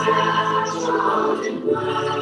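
A choir singing a cappella, holding sustained chords that change about halfway through.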